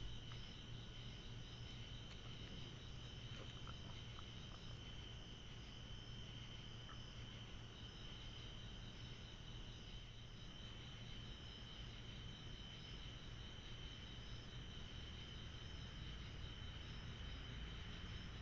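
Faint, steady chorus of crickets at night, a continuous high trill with a pulsing shimmer above it. A few faint ticks come in the first few seconds.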